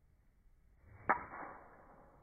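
Golf driver striking a teed ball: a short swish of the downswing builds, then one sharp crack of impact about a second in, fading over about half a second.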